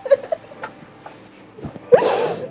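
A woman's short, high excited squeals of joy: a couple of brief cries just after the start, then a rising cry right at the end.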